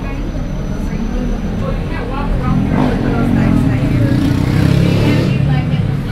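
Cabin noise of an electric shuttle bus on the move: a low rumble from the drive and road that gets louder from about halfway through, with people talking in the cabin.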